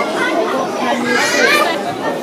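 Indoor crowd chatter: several people talking at once in a large, busy room, with one higher voice standing out about a second in.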